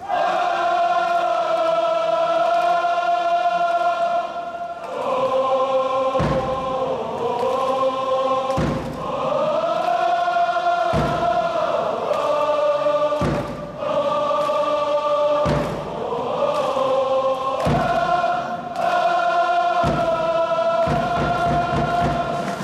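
Football supporters singing a slow chant in unison, holding long notes, with a drum thumping about every two seconds from a few seconds in, coming faster near the end.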